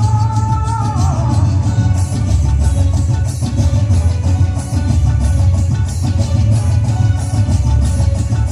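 Music played loudly through a concert stage's PA system, heavy in the bass with a steady beat; a held, falling melodic note sounds in the first second.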